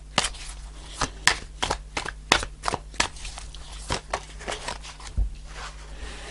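Tarot deck shuffled by hand: a fast, irregular run of card clicks that thins out about three seconds in. Near the end a card is drawn and laid on the cloth-covered table with a soft thump.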